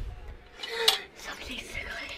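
Small metal-and-glass lantern handled and turned over in the hands, with light clinks and rattles of its metal frame and panes, and a brief soft voice near the middle.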